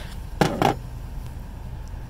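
Two sharp metal clinks about a quarter second apart: a steel hitch pin and clip being handled at a tow hitch receiver.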